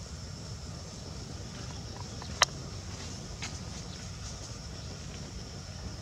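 Outdoor ambience: a steady high-pitched insect drone over a low rumble, broken by one sharp click about two and a half seconds in and a fainter click a second later.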